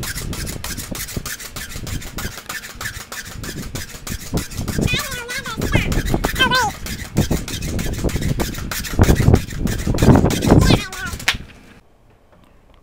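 Pogo stick bouncing on a concrete driveway: a fast run of knocks and spring rubbing, with a voice squealing twice around the middle. It stops suddenly near the end.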